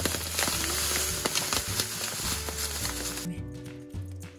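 Dry panko breadcrumbs poured from a plastic bag into a ceramic bowl: a dense, crackly rustling hiss that stops abruptly about three seconds in, over background music.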